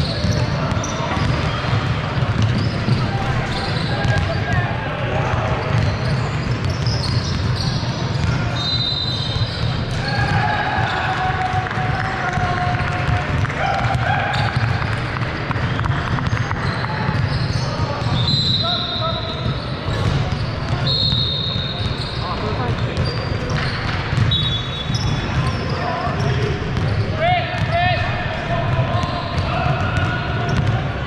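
Several basketballs bouncing on a hardwood court in a large, echoing gym, under indistinct chatter from players and spectators, with occasional short high squeaks.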